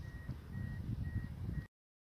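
A short, high, single-pitched beep repeating about twice a second over a low rumble, cut off suddenly near the end.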